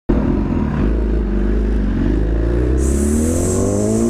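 Inline-four sport motorcycle engine accelerating away, its pitch rising steadily through the second half. A high hiss joins about three seconds in.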